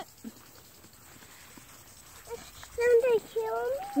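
A high-pitched voice calls out in the second half, after about two seconds of quiet.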